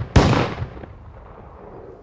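A single gunshot just after the start, a sharp crack that rings off over about half a second.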